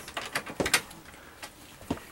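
A few short clicks and knocks from the sofa bed's locks and fold-down legs being handled under its wooden frame: a sharp knock about three quarters of a second in and a lighter one near the end.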